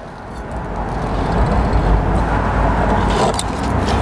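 A steady low rumbling noise that swells over the first second and a half and then holds.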